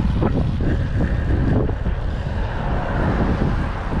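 Steady low rushing of wind buffeting a bike-mounted action camera's microphone as a road bike is ridden at speed.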